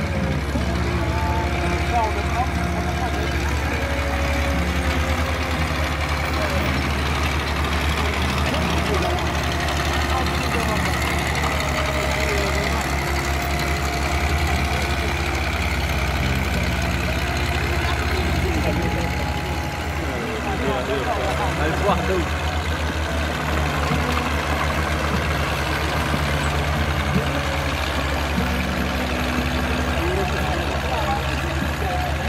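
Small tractor engines running steadily as they pull ploughs through the soil, with the chatter of a crowd of voices throughout.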